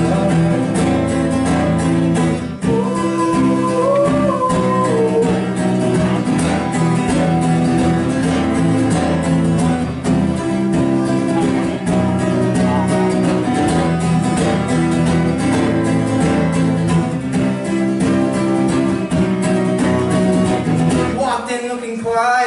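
Acoustic guitar strummed steadily through a live PA in an instrumental stretch of a song, the strumming thinning out about a second before the end.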